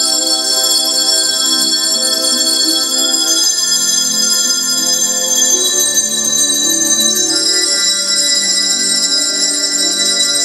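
A handbell choir playing a tune: many hand-rung bells sounding together, their long, ringing notes overlapping.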